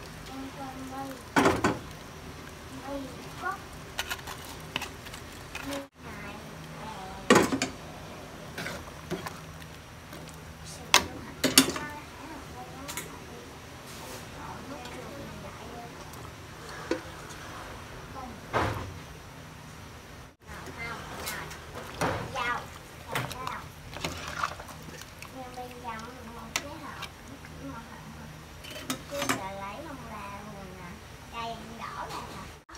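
Scattered knocks and clinks of kitchenware: a plastic strainer and utensils tapping against a metal stockpot as fermented fish paste is strained into the broth and fish and shrimp are added. Faint voices in the background.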